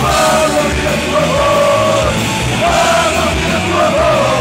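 Punk rock band playing live and loud: shouted vocals through the PA, held in long wavering phrases, over a full band of electric guitar and drums.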